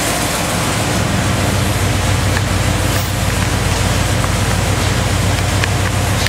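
Big-block Chevrolet V8 running on an engine dynamometer, holding a steady speed with no revving.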